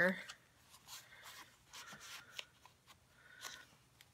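Soft rustling and sliding of cardstock as a paper photo mat is handled and slid back into a handmade mini album, with a few light brushes and taps of paper against paper.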